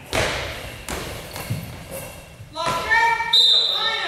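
Goalball, a hard rubber ball with bells inside, landing on the wooden court with a thud right at the start. Its bells rattle as it rolls across the floor for about two and a half seconds, with a couple of further knocks.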